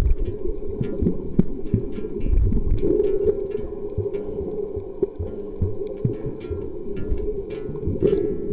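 Muffled underwater rumble of moving water picked up by a submerged camera, with irregular low thumps and faint crackles throughout.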